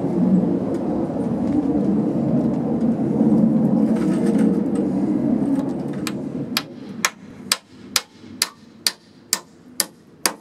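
A low rumble fills the first part, then a claw hammer drives a nail into the cedar two-by-four corner joint: about nine sharp, evenly spaced strikes, roughly two a second, starting about six seconds in.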